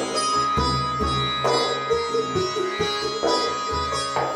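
Live acoustic instrumental music: a plucked long-necked string instrument ringing over a held high drone tone, with deep frame-drum strokes about half a second in and again near the end.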